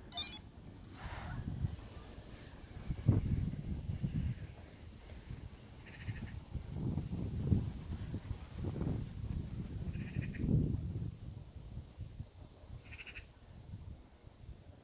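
Outdoor noise with uneven low rumbling, and three short high animal calls a few seconds apart.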